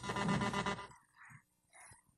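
A short burst of buzzy noise lasting about a second, then two faint brief sounds.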